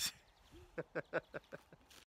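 Brief laughter: a quick run of about seven short 'ha' sounds, starting just under a second in.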